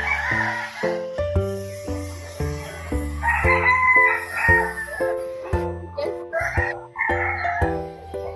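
A rooster crowing, with one long crow about three seconds in, over background music carrying a simple stepping melody.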